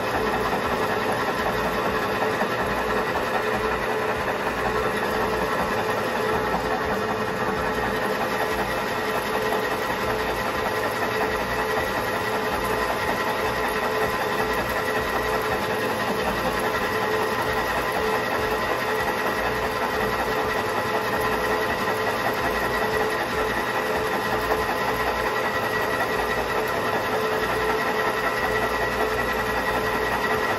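Full-size metal lathe running at a steady speed, with an even high whine over its gear hum. A centre drill in the tailstock is fed into the spinning brass bar to spot a centre dimple.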